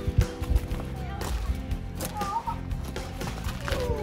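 Background music with a beat: steady held tones under repeated percussive strokes.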